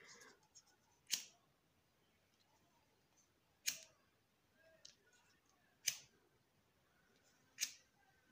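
A disposable lighter being struck four times, one sharp click about every two seconds, each lighting the flame used to lightly seal the cut ends of ribbon so they don't fray.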